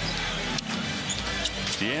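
A basketball being dribbled on a hardwood arena floor, short sharp bounces, over background music; a commentator's voice comes in near the end.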